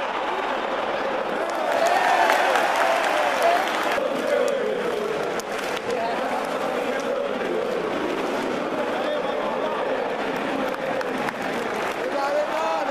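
Stadium crowd of football supporters: a steady din of thousands of voices, with a mass chant whose pitch rises and falls.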